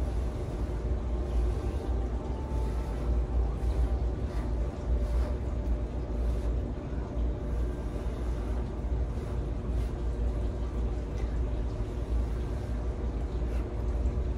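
A person blowing steadily across wet acrylic pouring paint on a canvas, over a constant low rumble.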